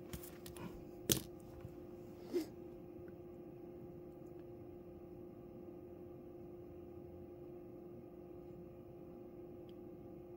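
Faint steady electrical hum, with three short clicks in the first few seconds, the loudest about a second in.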